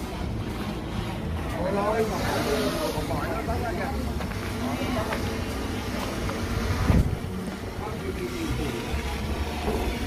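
Background chatter of several people talking at a distance over a steady low rumble, with a single bump about seven seconds in.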